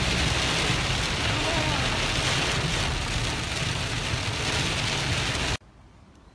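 Heavy rain hitting a car's windshield and body, heard from inside the moving car over a low rumble of road and engine noise. It cuts off abruptly about five and a half seconds in.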